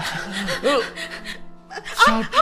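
A voice gasping and whimpering in distress over background music; in the second half the voice drops away and held music tones carry on.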